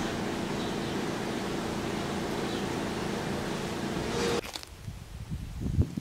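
Steady mechanical hum with faint held tones, cutting off abruptly about four and a half seconds in, after which only a faint, uneven low rumble remains.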